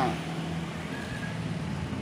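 Street traffic: a steady motor-vehicle engine hum with road noise.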